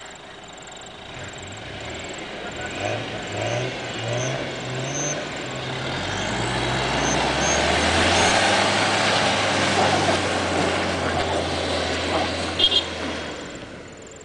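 4WD engines revving under load as a bogged Toyota Land Cruiser Prado is driven out while being snatch-recovered by a second 4WD. The engine note climbs in steps, then settles into a steady low drone from about six seconds in, with tyre and mud noise loudest around eight seconds.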